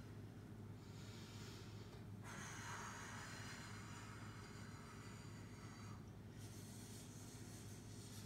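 Faint room tone with a steady low hum, and a woman's soft breathing as she exercises, in slow, noisy swells.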